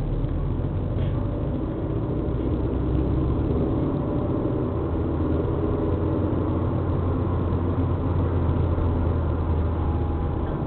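Car engine and tyre/road noise heard from inside the cabin while driving: a steady low rumble.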